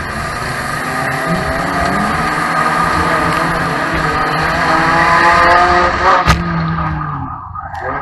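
Banger racing car's engine heard from inside its stripped cabin, running loud and revving up, its pitch rising for several seconds under acceleration. A single sharp bang about six seconds in, after which the engine note falls away.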